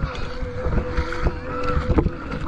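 Feet wading through shallow water over a coral reef flat, each step splashing, a few times a second, with wind rumbling on the microphone.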